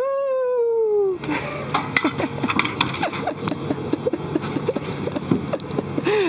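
A woman's voice giving one drawn-out 'whoo' that slides down in pitch over about a second. After it come scattered short vocal sounds and light clicks over the steady whir of the space station's cabin ventilation.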